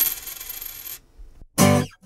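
A coin dropped onto a hard surface, rattling in quick clicks with a high ring as it spins down and settles about a second in. A brief pitched sound follows near the end.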